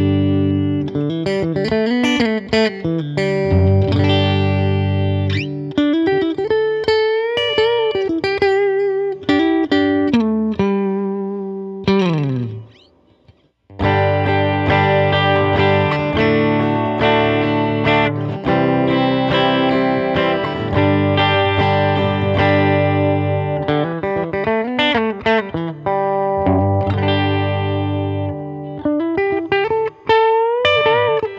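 Electric guitar played clean through a Mesa Boogie California Tweed 20-watt 1x10 tube combo in its 20-watt mode with the gain turned well down, with no pedals: chords and single-note lines with vibrato. Partway through, the playing slides down and stops briefly, then resumes on a semi-hollow-body electric guitar in place of the Telecaster-style guitar.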